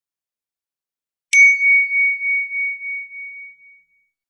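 A single bell-like ding sound effect, struck once about a second and a half in. It rings on one high, clear note and fades away over about two seconds with a slight pulsing wobble.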